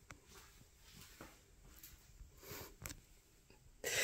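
Quiet room tone with a few faint soft clicks and rustles from the phone being handled and carried while filming.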